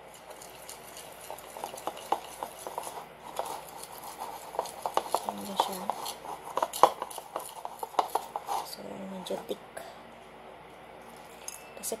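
A whisk stirring thick tempura-flour batter in a bowl just after water is added: a quick, uneven run of light clinks and scrapes against the bowl that stops about ten seconds in.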